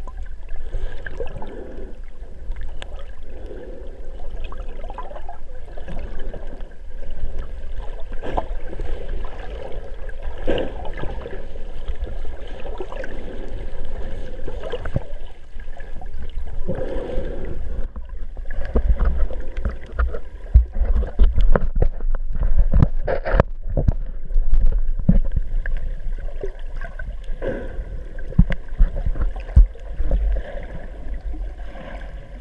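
Underwater sound through a GoPro's waterproof housing: a muffled low rumble of moving water, with irregular knocks and clicks that grow stronger in the second half and peak in one sharp click about two-thirds of the way through.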